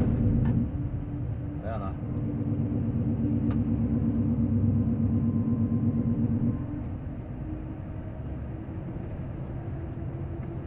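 Semi-truck's diesel engine running steadily at cruising load, heard from inside the cab with road noise. About six and a half seconds in, the engine drone drops in level.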